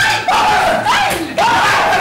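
Loud shouting and yelling voices, about three long yelled calls that rise and fall in pitch.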